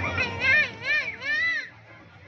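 Children shouting and calling in high, sing-song voices whose pitch swings up and down. The calls stop abruptly about three-quarters of the way through, leaving a low background din of the crowd.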